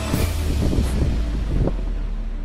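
A deep, loud low rumble with a few heavier thumps, over faint music.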